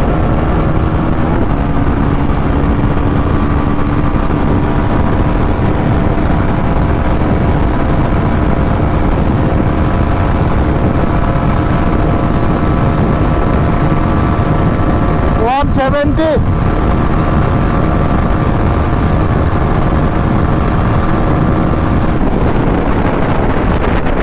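Bajaj Pulsar NS400Z's single-cylinder engine held at steady high revs at about 145–150 km/h, under heavy wind rush on the microphone.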